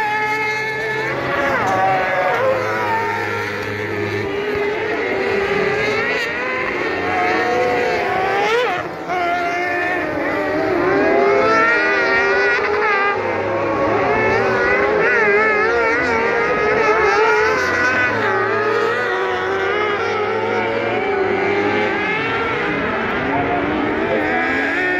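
Several kart cross karts' motorcycle engines revving high and shifting as they race, their pitches climbing and dropping over one another, with a brief lull about nine seconds in.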